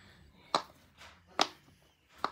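Silicone pop-it fidget toy popping as its bubbles are pressed: two sharp pops, just under a second apart.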